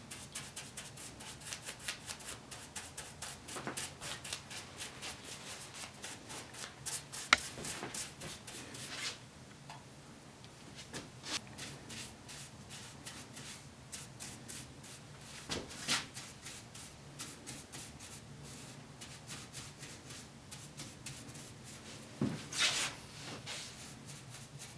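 A paintbrush stroking paint onto the wooden arm rail of a Windsor chair, bristles rubbing quickly back and forth over the wood. The strokes are rapid and close together for the first nine seconds or so, then come more spaced out, with a few sharper knocks along the way.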